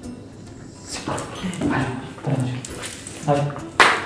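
A man's excited, wordless calls to a dog in short bursts over background music, with one sharp, loud sound near the end.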